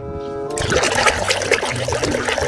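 Soapy water sloshing and splashing in a plastic basin as toy animals are swished around in it, a continuous churning that starts about half a second in. Background music plays under it.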